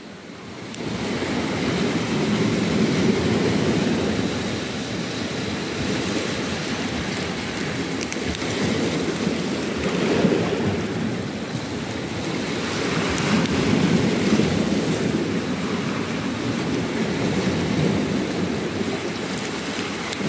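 Sea surf washing on the shore with wind rushing over the microphone, a steady rush that swells and eases every few seconds.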